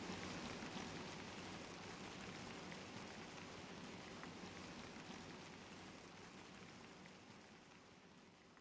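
Faint rain ambience: an even hiss of rainfall with scattered drop ticks, slowly fading out.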